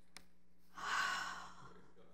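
A woman's single breathy sigh, swelling and fading over about a second, starting just under a second in.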